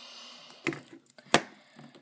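Mobile phones being handled and knocked against a wooden tabletop: a short rustle, then two sharp knocks, the second one louder.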